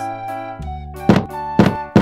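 Cartoon sound effect of wooden domino bricks toppling one after another: sharp knocks about two a second, starting about a second in, over cheerful children's background music.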